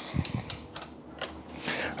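A few light, irregular clicks and taps of a motorcycle throttle cable and its outer sheath being handled against the bike's carburettors and frame, mostly in the first second or so.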